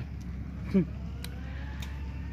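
An excavator's engine running steadily, heard as a low even hum with a faint tone drifting in pitch over it.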